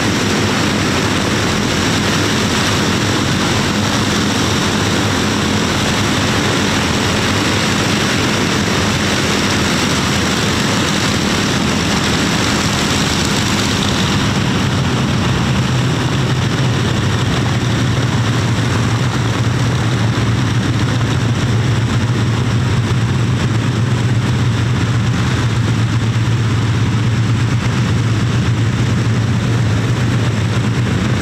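Rolls-Royce Merlin piston aero engines of a WWII propeller warbird running on the ground during a taxi run: a loud, steady drone that drops to a deeper note about halfway through, as the engines are throttled back or the shot changes.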